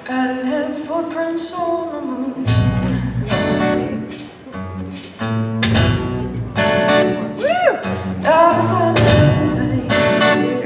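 Live acoustic band music: a woman singing over a strummed acoustic guitar and electric bass, the strumming and low bass notes coming in strongly about two and a half seconds in.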